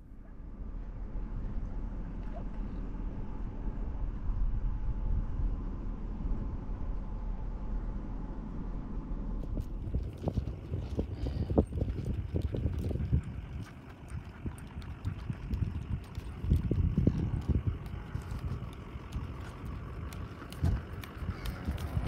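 Horse walking on dry dirt, hooves knocking in an uneven clip-clop, from about ten seconds in. Before that there is a steady low rumble.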